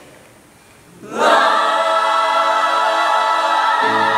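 Mixed show choir singing full-voiced sustained chords, coming in suddenly about a second in after a brief hush in which the previous sound dies away in the hall's reverberation. Lower notes join in near the end.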